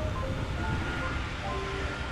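Steady rush of wind and road noise on the microphone while moving along a highway, under quiet background music: a light melody of short notes.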